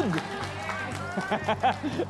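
Steady background music bed with voices talking over it.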